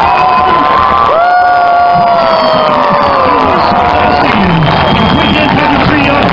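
Large stadium crowd cheering. About a second in, a nearby fan lets out one long whoop, about two and a half seconds, that slides down in pitch as it ends.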